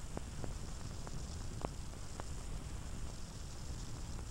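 Steady hiss and low hum of an old film soundtrack, with a few faint clicks scattered through it.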